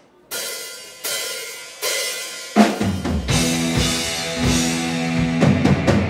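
Live rock band starting a song: three cymbal strikes about three-quarters of a second apart count it in, then the full band enters on the next beat, a bit over halfway through, with electric guitars, bass and drums.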